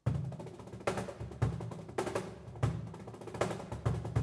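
Live flamenco-jazz ensemble music led by hand percussion and drums, with strong low drum strokes every half second or so. It cuts in suddenly at the start.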